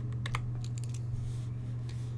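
Steady low electrical hum with a few quick, light clicks in the first half second.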